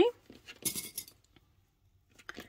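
A brief rustle with light clicks about half a second in: small plastic sewing clips being pushed onto the edge of folded cotton fabric.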